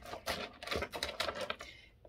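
Tarot cards and small crystal chips handled on a tabletop: a quick, irregular run of light taps and clicks from fingernails and cards.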